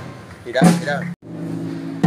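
Men's voices raised loudly over a procession band. The sound drops out completely for an instant just past halfway, then a held note from the band carries on.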